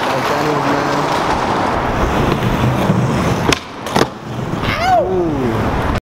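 Skateboard wheels rolling on concrete, then two sharp clacks of the board about half a second apart, followed near the end by a short call from a person that rises and falls in pitch.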